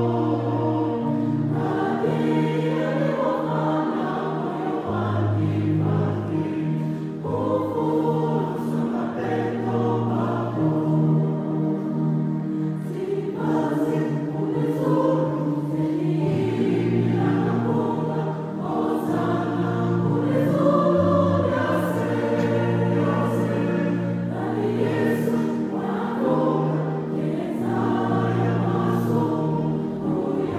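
A choir singing a gospel-style song, with low held notes underneath that change every second or two.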